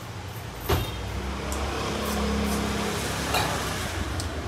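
A sharp click, then a motor vehicle's engine running close by on the street, a steady low hum that is loudest in the middle.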